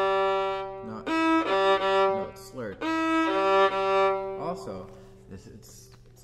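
Violin played slowly in long bowed notes, three sustained phrases with short breaks between them, dying away about four and a half seconds in. These are low notes on the D and G strings, with the bow slurring over to the G string in one stroke.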